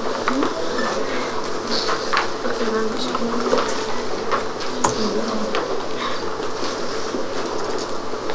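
Classroom murmur: many students talking quietly at once, with scattered small clicks and rustles.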